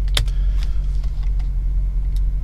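A few computer keyboard keystrokes, the clearest one just after the start, over a steady low hum.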